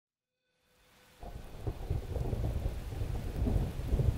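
Low rumbling ambience with a crackling, rain-like patter, coming in suddenly about a second in after silence.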